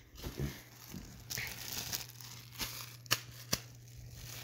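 Plastic packaging air bags crinkling and crumpling as they are crushed and handled, with two sharp snaps a half second apart about three seconds in.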